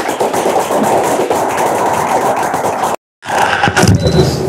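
A group of people clapping in applause, a dense patter of many hands, cut off abruptly for a moment about three seconds in.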